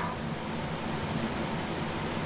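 A pause between speech filled only by a steady background hiss of room noise.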